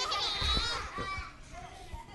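Young children's high voices calling out together for about a second, then fading.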